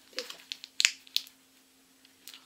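Sharp snaps and clicks of stiff paper as a pad of scrapbooking paper is handled and its sheets flipped, about four in just over a second, the loudest near the middle.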